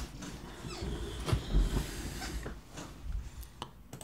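A few faint, scattered clicks from a computer mouse over low room noise.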